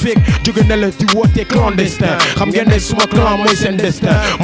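Hip hop track: rapping over a beat with deep bass hits that drop in pitch.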